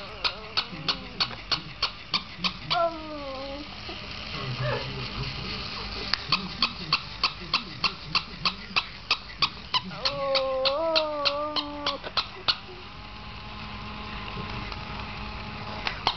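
A dog whining twice: a short falling whine about three seconds in and a longer wavering one about ten seconds in. Under it runs a steady rapid tapping, about four to five sharp taps a second, that stops for a few seconds now and then.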